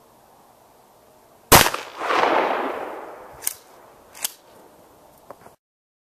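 A single shot from a 12-gauge pump shotgun firing a one-ounce rifled slug: a sharp, loud report about a second and a half in, followed by its echo rolling away and fading over about two seconds. Then come two sharp clacks a bit under a second apart from the pump action being worked, and a couple of small ticks.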